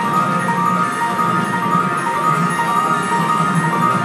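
Star Wars video slot machine playing its looping big-win celebration music, a short chiming melody repeating over and over, while the win meter counts up.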